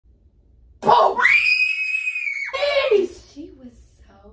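A person's scream: a sudden shriek about a second in, held high and steady for over a second, then dropping in pitch and trailing off.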